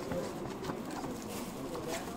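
Crinkling and crackling of the plastic-covered pages of a glossy catalogue as a hand turns and presses them, in short irregular bursts over a steady background murmur of traffic and distant voices.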